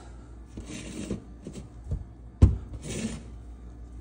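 A small digital multimeter, its test leads and an ignition coil being handled and shifted on a tabletop: faint scraping and rustling, with one short sharp knock about two and a half seconds in as something is set down.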